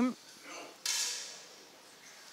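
A single 10 m air rifle shot: a sharp pop just under a second in, followed by a hiss that fades away over about a second.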